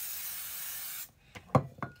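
Cape aerosol hairspray sprayed onto the back of the hair in a steady hiss that cuts off about a second in, from a can that is running low. A few short knocks follow.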